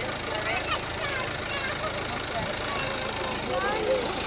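Fire truck engine idling steadily, with faint children's voices and chatter over it.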